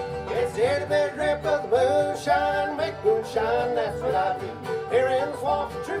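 Bluegrass band playing a short instrumental passage on fiddle, banjo, acoustic guitars and upright bass, with the lead voice coming back in near the end.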